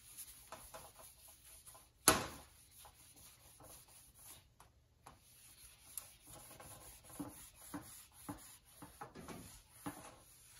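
Faint strokes of a cloth rag wiping a bare aluminium sheet panel, coming in an uneven rhythm of about two a second in the second half. About two seconds in there is one sharp knock with a brief ring, the loudest sound.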